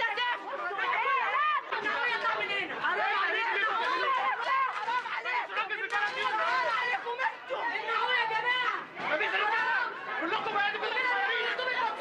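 A crowd of demonstrators shouting and talking over one another, several loud, high-pitched voices at once with no pause.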